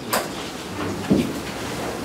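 Microphone handling noise: a knock just after the start, rustling, and another low thump about a second in, typical of a handheld microphone being passed to a questioner.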